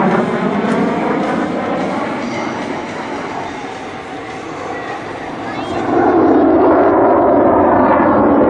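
Twin jet engines of a CF-188 Hornet fighter in a low display pass, a loud steady roar with a wavering, phasing sweep. About six seconds in it grows louder and deeper.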